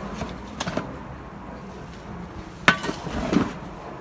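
Steel shovel scooping peat moss and tipping it into a plastic mixing tub of potting soil: a gritty scraping rustle with a few sharp knocks, the sharpest about two and a half seconds in.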